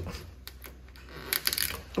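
Light plastic clicks and knocks from a refrigerator's clear plastic crisper drawer being handled: a single click about half a second in, then a quick cluster of knocks near the end.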